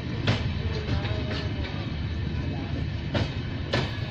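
Express train passenger coaches rolling past with a steady rumble. Their wheels clack over rail joints, once sharply just after the start and twice in quick succession near the end.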